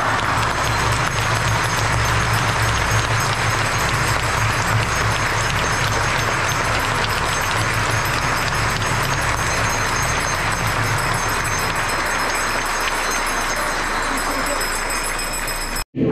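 A church congregation applauding together, a dense steady clatter of many hands with voices and a low pulsing beat underneath; it eases off slightly near the end and then cuts off abruptly.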